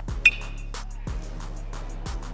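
Metal baseball bat striking the ball: a single sharp ping with a brief ringing tone, about a quarter second in. Background music with a quick steady beat runs underneath.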